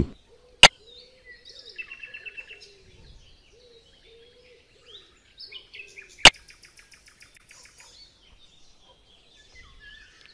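Faint birds chirping in short repeated bursts, broken by two sharp clicks, one about half a second in and another about six seconds in, as on-screen buttons are pressed.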